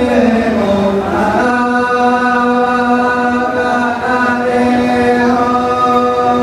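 Two men singing a slow, chant-like folk melody in long held notes, with bowed fiddles playing along. The pitch slides down over the first second, then settles into a steady held note with small steps.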